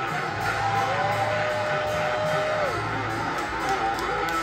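Electric guitar playing with the band, a single note sliding up about a second in and held for nearly two seconds before dropping away.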